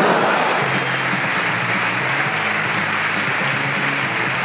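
Audience applause with music playing underneath, steady throughout.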